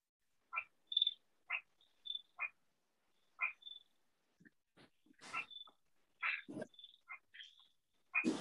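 Faint chirps and short, quick calls of small birds, heard over a video call's audio, coming in separate snatches with silence between them, plus a couple of lower, noisier sounds midway.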